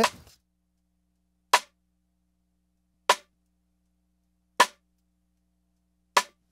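Three cross-stick rim clicks on a snare drum, evenly spaced about a second and a half apart, each short and cut off to silence. The snare top mic is heavily processed: compressed, limited, saturated and noise-gated so that only the rim comes through, with no delay added, giving a flat, mid-range-heavy click.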